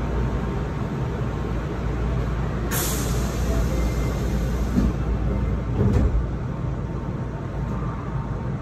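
Hankyu commuter train car standing at a station platform, with a steady low hum. About three seconds in, compressed air lets out a hiss for a couple of seconds, and a short thump follows about six seconds in.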